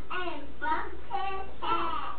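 A young child singing in a high voice, in short phrases.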